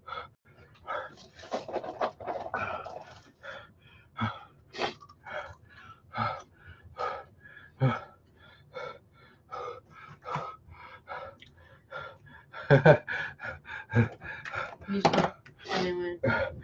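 A man panting hard in quick, short breaths, about two a second, from the burn of an extreme hot sauce. Near the end he breaks into louder laughing gasps.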